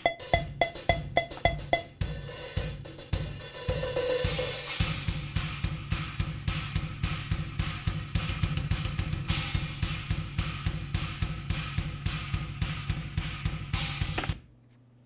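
Quantized, crossfaded multitrack live rock drum kit recording playing back from Cubase, with no gaps or pops. It opens with about seven evenly spaced drum hits, then the full kit comes in with kick, snare, hi-hat and cymbals. From about five seconds in, a fast steady kick drum pulse drives the beat until playback stops abruptly.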